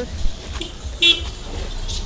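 A short laugh, then about a second in a brief, high vehicle horn toot, over a low rumble.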